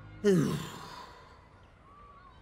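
A man's long sigh: a breathy exhale with a voiced tone that falls in pitch, starting about a quarter second in and fading over about a second.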